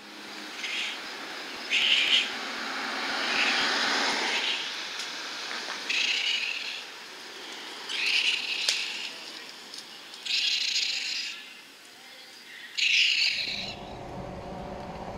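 Orphaned baby raccoon (kit) crying: seven short, high chirping cries, each under a second, spaced about one to two and a half seconds apart, over a steady outdoor hiss.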